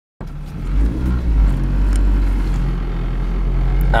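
Toyota Corolla's engine and road noise heard inside the cabin while driving: a steady low drone.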